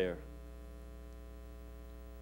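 Steady low electrical mains hum, after the tail of a man's spoken word at the very start.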